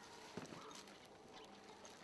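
Near silence: faint background with two soft knocks close together about half a second in.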